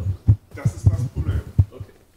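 Muffled, boomy speech from an audience member talking away from the microphone, heard as irregular low thumps with faint voice above them.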